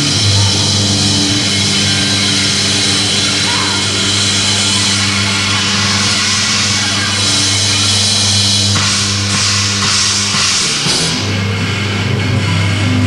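Live rock band playing loud: distorted guitars, bass and a drum kit with crashing cymbals. The music changes about nine seconds in, as a new section begins.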